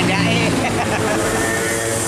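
Steady noise of road traffic, with a short bit of voice near the start.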